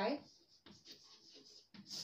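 Chalk writing on a blackboard: faint, irregular scratching as a short expression is written.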